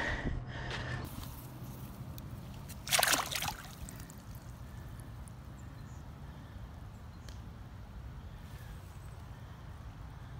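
Faint water sloshing at a pond's edge, with a brief louder burst of noise, like a splash, about three seconds in.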